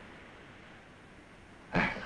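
Faint, steady background hiss of an old television soundtrack, with no other sound in it. Near the end a man speaks a single word.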